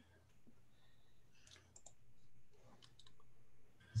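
A few faint, short clicks over a low steady hum, about one and a half seconds in and again near three seconds.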